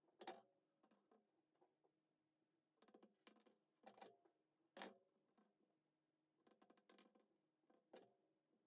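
Near silence with faint, short clicks and snips of scissors cutting cotton embroidery floss and of the thread being handled; a few scattered clicks, the clearest a little past the middle.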